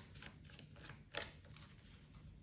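Quiet room tone with one brief soft brush about a second in, as a tarot card is handled on the table.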